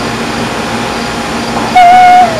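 A baby's short, loud, high-pitched squeal near the end, held on one pitch and then dropping, over a steady background hiss. A brief click comes right at the start.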